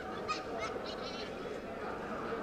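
Sports shoes squeaking on a kabaddi court mat as players shift their feet, about four short, high squeaks in the first second or so, over steady background noise from the hall.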